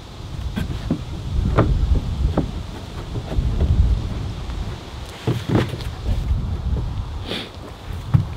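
Wind rumbling on the microphone, with a few light knocks scattered through it.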